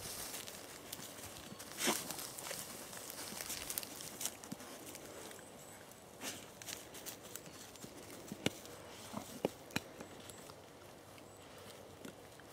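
Boots shifting on wet grass and a roe deer carcass being moved about on the ground: soft rustling with scattered short knocks, the loudest about two seconds in and a few more sharp clicks later on.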